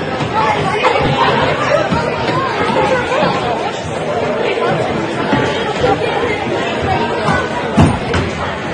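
Many people talking at once in a gymnasium, a steady echoing chatter with no single voice standing out; a single sharp bang just before the end is the loudest moment.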